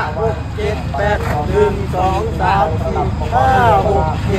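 A man's voice calling out to dancers, talking or counting the beat, over a steady low rumble.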